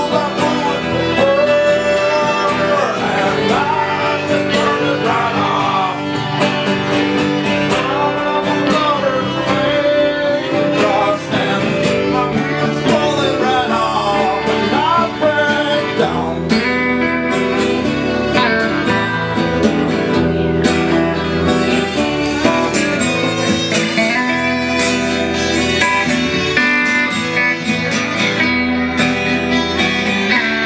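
Live folk band playing: strummed guitars with violin, mandolin, bass and drums. It is recorded on a camera's on-board microphones, so the sound is of very poor quality.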